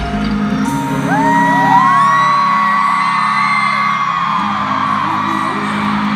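Stadium crowd screaming: many high cries rise and hold from about a second in, over low held notes of the song's music from the PA.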